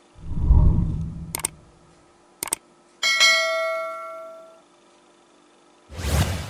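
Subscribe-button animation sound effect: a low rumble in the first second, two sharp clicks, then a notification-bell chime that rings and fades over about a second and a half.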